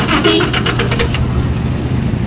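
Steady low hum of a running engine or motor, with light clicking in the first second.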